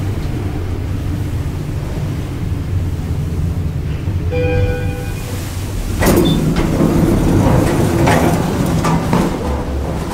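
1982 Schindler traction elevator car humming low as it travels. A single arrival chime sounds about four and a half seconds in. From about six seconds in the car doors slide open, louder.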